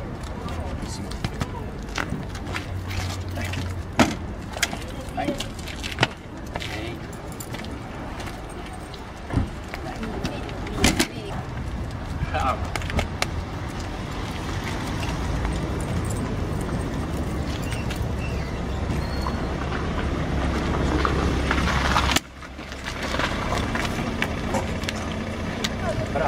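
Outdoor noise with a motor vehicle running nearby, growing louder over several seconds and stopping abruptly near the end, with scattered sharp knocks and clicks and indistinct voices.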